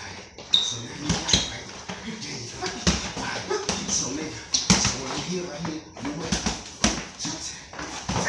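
Boxing gloves landing punches during sparring and pad work: sharp slaps and thuds coming irregularly, every second or so, among shuffling feet and voices.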